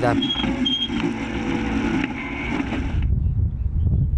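Engine of a Super 7 racing roadster heard from its onboard camera, a fairly steady note with rushing noise. About three seconds in it cuts abruptly to a low rumble of wind on an outdoor microphone.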